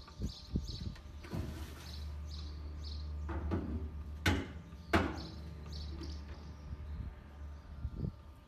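Outdoor ambience: small birds chirping over a low rumble, with two sharp knocks about two-thirds of a second apart in the middle.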